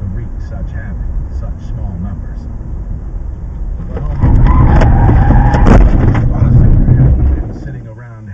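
Inside a car, picked up by its dashcam: steady road and engine noise, then from about four seconds in a loud rush of noise with a held high tone. A single sharp impact comes near six seconds, the crash of a head-on collision with an oncoming pickup truck.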